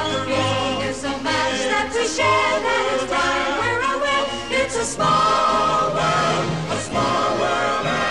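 Background music: a choir singing.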